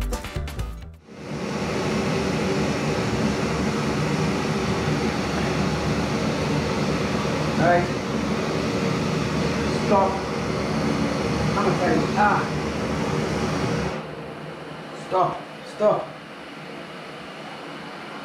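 Two gas canister camping stoves burning at full, a steady rush of burner noise as the water in their pots comes to the boil. The noise drops sharply about fourteen seconds in, leaving a quieter steady hiss.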